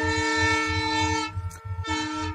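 A train horn sounding a long, steady multi-note chord that fades out about a second and a half in, one lower note lingering briefly after.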